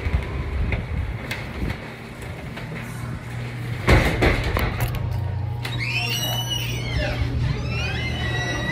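A restaurant's entrance door opening with a loud knock about four seconds in, followed by background music with a gliding melody over a low steady hum.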